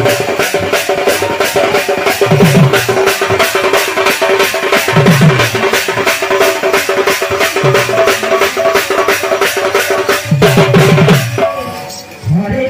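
Kirtan music played loud: a fast, even beat of about five strokes a second over a held melody note, with deep drum strokes every two to three seconds. The music stops shortly before the end.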